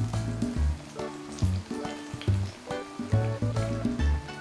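Breaded potato croquettes deep-frying in hot oil, a steady sizzle, heard under background music with a rhythmic bass line.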